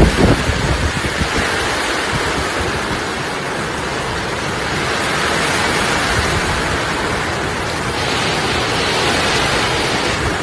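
Heavy typhoon rain and wind making a steady, loud hiss, with a brief low rumble right at the start.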